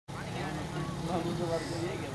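Faint background voices over a low, steady rumble of ambient noise.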